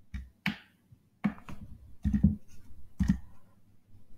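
Computer keyboard keys struck one at a time: about six separate clacks spread through the few seconds, a couple of them in quick pairs.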